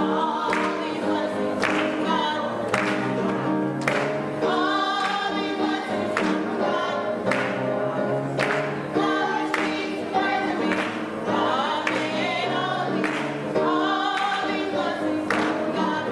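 Youth gospel choir singing with piano accompaniment, hand claps landing on the beat about once a second.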